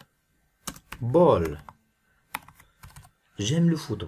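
Computer keyboard being typed: a handful of separate key clicks, most of them in a quick cluster between about two and three seconds in. A short spoken word comes about a second in, and speech starts again near the end.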